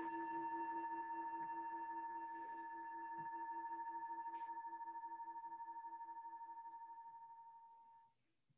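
Meditation singing bowl ringing after a strike, with several clear tones and a slow pulsing wobble in the lowest one, fading steadily and dying out near the end. Rung to mark the close of a meditation sit.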